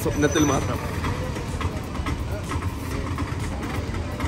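Street traffic: vehicle engines running at low revs, a steady low rumble, after a brief bit of speech at the very start.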